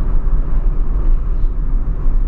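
Steady low rumble of a 2003 Ford Fiesta Supercharged driving at an even pace, with its engine and road noise heard from inside the cabin. There is no revving or gear change, just an even drone.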